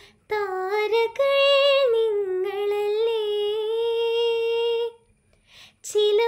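A teenage girl singing a Malayalam light-music song (lalithaganam) solo and unaccompanied: a few gliding sung phrases lead into a long held note with slight vibrato. It breaks off near the end for a short pause and an audible intake of breath before the next phrase.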